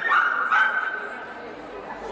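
Miniature schnauzer giving a long, high-pitched yelping bark in the first second, fading to hall murmur after it.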